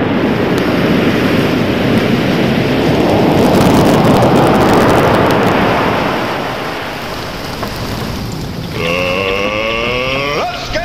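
A loud, steady rushing noise like wind or surf, swelling in the middle and easing off. Near the end a wavering pitched sound comes in and rises in pitch.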